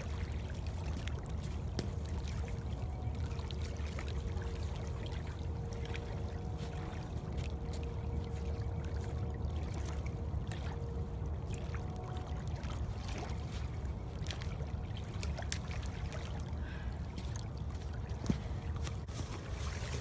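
Wind rumbling on the microphone over choppy river water lapping at the bank, with a faint steady hum in the background and a few light clicks in the last few seconds.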